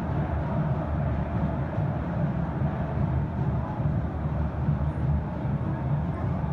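Steady stadium ambience during play: a low, even rumble with a faint murmur from a sparse crowd, no cheers or whistles standing out.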